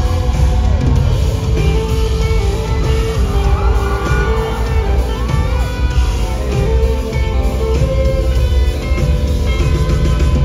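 Live band playing a loud instrumental passage with guitar over heavy, steady bass, recorded from the audience at a concert.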